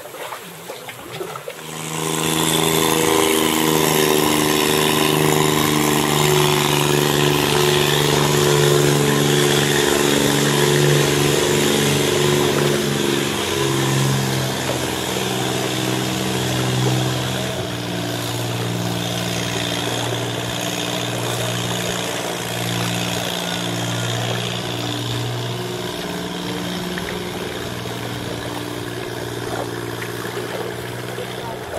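A boat engine running close by, starting suddenly about two seconds in as a loud, steady drone. Its pitch drops about halfway through, and it carries on a little quieter toward the end.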